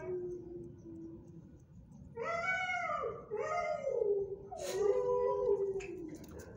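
Pit bull–type dog whining in drawn-out cries that rise and fall in pitch. One falling whine comes at the start, then after a pause of about a second a run of four or five more, the last one longer. A sharp click is heard about three-quarters of the way through.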